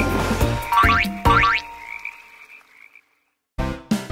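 Closing bars of a cartoon children's song with frog croak sound effects and quick rising sound-effect glides. The music fades out about two seconds in. After a brief silence, a new tune starts just before the end.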